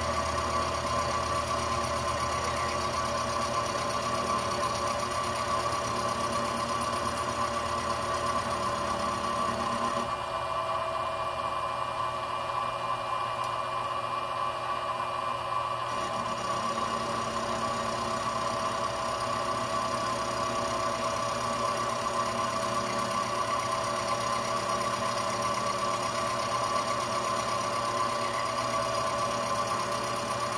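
Benchtop milling machine running with a steady whine while its end mill cuts the corner of a metal speed square being turned on a rotary table. The sound thins for several seconds about a third of the way in.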